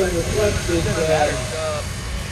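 Speech, with a steady low rumble underneath.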